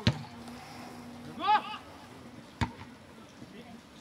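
A football kicked twice, two sharp thuds about two and a half seconds apart, with a loud shout from a man between them.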